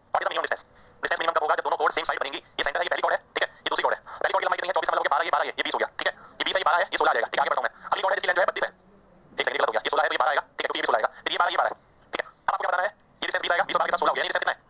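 Speech only: a man talking, with short pauses between phrases.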